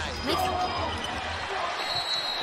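Basketball game broadcast sound: a steady arena crowd noise with the ball bouncing on the court during live play, and a commentator's voice briefly at the start.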